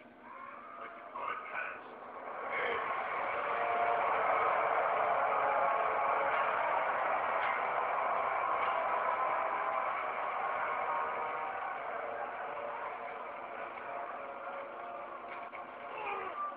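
Film soundtrack of an action scene played through a TV speaker and re-recorded, thin and muffled: a dense, sustained roar of mixed noise swells in a couple of seconds in and slowly eases toward the end.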